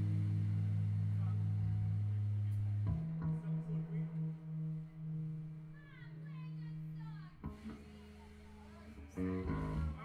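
Amplified electric bass and guitar sounding long held notes between songs, as when tuning up: a loud low note rings for about three seconds and stops, followed by softer, uneven notes and a short louder strum near the end.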